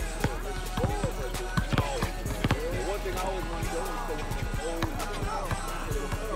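A basketball being dribbled and bouncing on an outdoor hard court in a series of sharp knocks that sound flat, like a ball low on air. Music and people talking run underneath.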